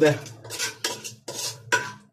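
A metal spoon clinking and scraping against a glass bowl of kofta curry: a few short clinks, the one near the end ringing briefly.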